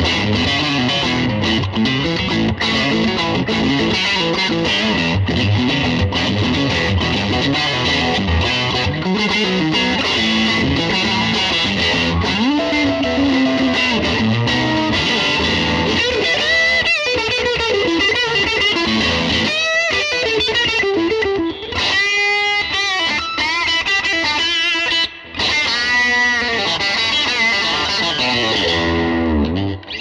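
1960 Fender Stratocaster electric guitar played through an amplifier: a dense chordal passage for about the first half, then lead lines with string bends and wide vibrato in the second half.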